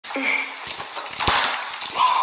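Cooked lobster shell cracked and torn apart by hand close to a microphone: crackling and crunching, with one sharp crack a little past halfway.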